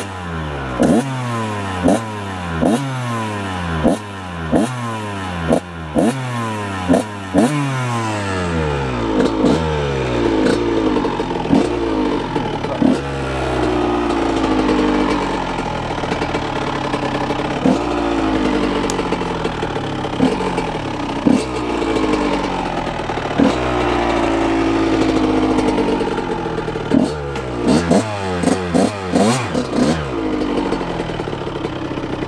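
1999 Honda CR125R's 125 cc two-stroke single-cylinder engine revving in short throttle blips, each falling away, a little more than one a second at first. In the middle it settles into longer, steadier pulls broken by a blip every second or two, and the quick blips come back near the end.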